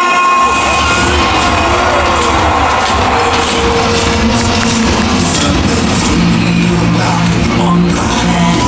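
Loud soundtrack music of a castle fireworks show playing over outdoor loudspeakers, with a crowd cheering.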